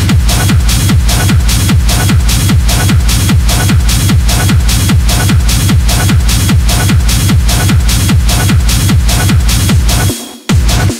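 Hard techno (schranz) track: a steady, driving four-on-the-floor kick drum at about two and a half beats a second, with fast percussion ticking between the kicks.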